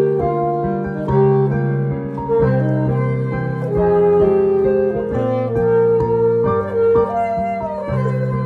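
Alto saxophone playing a melody of held and moving notes over piano chords, a sax and piano duet.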